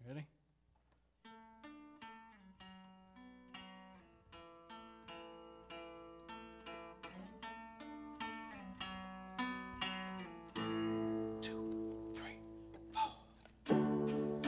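Hollow-body archtop guitar picking a slow melody of single ringing notes to open a song, starting about a second in and growing gradually louder. About ten seconds in, a fuller chord is held for a couple of seconds.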